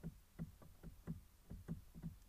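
Faint, quick light knocking, about four knocks a second, in a somewhat uneven rhythm.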